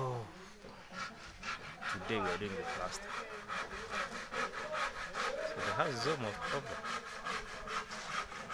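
Hand saw cutting wood in quick, regular strokes, about four a second, heard faintly.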